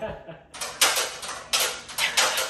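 Aluminum stepladder being worked open and shut, its metal legs and braces clattering in a series of short rattles that start about half a second in; its joints have just been lubricated with WD-40 to make it open easily.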